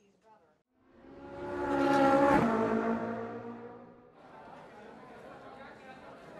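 A car passing by, swelling to a peak about two seconds in and fading away, its engine tone dropping in pitch as it goes past.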